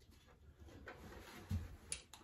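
Faint metal tool handling as a socket is taken from a socket organizer tray: light scattered ticks, a low knock about one and a half seconds in and a sharp click just before the end.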